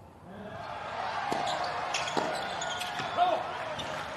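Tennis ball struck by rackets during a doubles rally: a few sharp hits roughly a second apart. Voices from the court and crowd run underneath.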